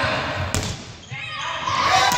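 Young players' voices calling out across a sports hall, with thuds of running feet on the floor and one sharp smack about half a second in.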